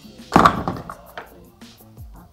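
Background music, with one short loud knock about a third of a second in as the aerosol foam-cleaner can is handled to fit its straw, and a lighter click a little past one second.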